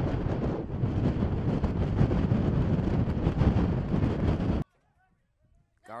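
Wind buffeting an outdoor field microphone: a loud, rough rumble that cuts off suddenly about four and a half seconds in.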